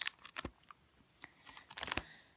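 Plastic card-sleeve pages of a ring binder being handled and turned: a series of short clicks and crinkles, with a dense cluster near the end.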